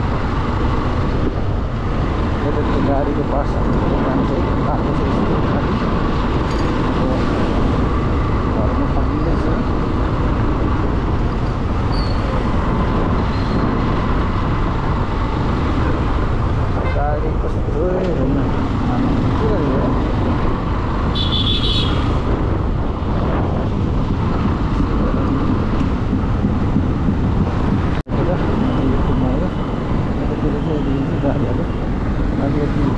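Motorcycle ride heard from the rider's seat: a steady rush of wind and engine noise with street traffic around, with a short high-pitched beep a little past two-thirds of the way through and a momentary dropout near the end.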